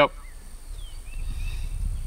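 Outdoor background: a low rumble that grows slightly louder, with a few faint short bird calls and a steady high whine.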